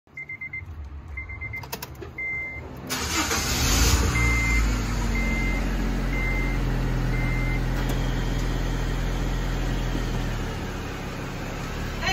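Honda Civic being started: dashboard chimes beep in short groups, then about three seconds in the engine cranks, catches and revs briefly before settling into a steady idle while a chime beeps four more times, about once a second. The idle eases down slightly near the end.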